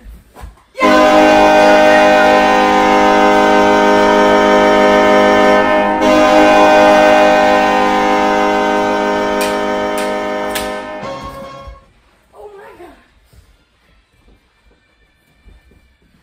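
Ice-hockey goal horn sounding for a goal: a loud, steady horn chord that starts abruptly, breaks off briefly about six seconds in, then sounds again and fades away by about twelve seconds in.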